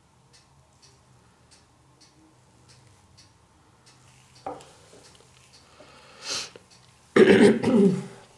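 A person coughs hard near the end, after a short breathy intake of breath. Before that there is only faint, regular ticking.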